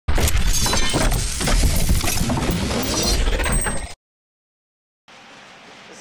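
A loud crashing, shattering sound effect, full of sharp cracks, lasts about four seconds and then cuts off abruptly to silence. About a second later a faint steady background comes in.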